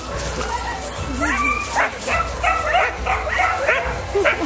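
Husky dogs whining and yipping in a run of short, high-pitched calls, starting about a second in.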